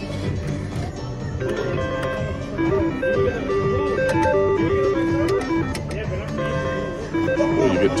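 A Cherries Jubilee three-reel slot machine plays a stepping electronic tune of short beeped notes while its reels spin, with a few sharp clicks, over steady casino background music and chatter.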